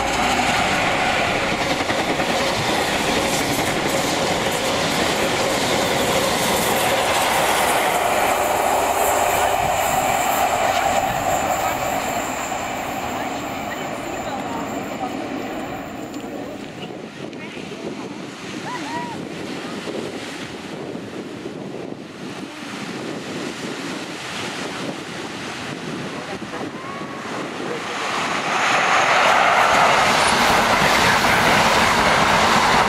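First Great Western High Speed Train with Class 43 diesel power cars passing close at speed: engine and wheels on the rails, loud for about the first twelve seconds, then fading as the train goes by. Near the end a second HST comes close and the train noise swells loud again.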